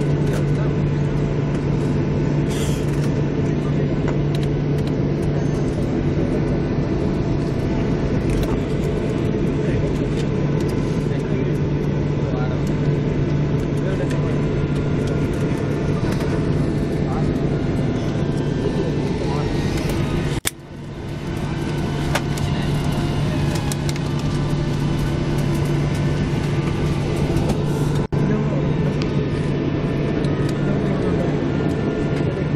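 Steady cabin noise of a jet airliner taxiing after landing: engines running with a steady low hum and rushing noise, with indistinct passenger chatter underneath. The sound dips sharply and briefly about two-thirds of the way through, then comes back.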